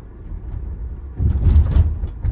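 Road and tyre rumble heard inside the cabin of a moving 2024 Tesla Model Y, an electric car with no engine note. The rumble swells louder for about half a second a little over a second in.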